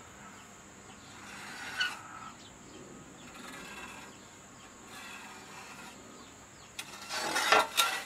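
Light scratching of a white marker drawing lines on a rusty steel circular saw blade, then a louder scrape near the end as the blade is shifted across the wooden workbench.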